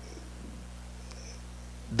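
Low steady electrical hum with several evenly spaced overtones, carried on the microphone and sound-system line.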